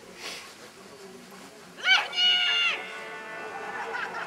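A handler's shouted one-word down command to a dog running a send-away: one long, high-pitched call about two seconds in, rising at the start and then held for most of a second.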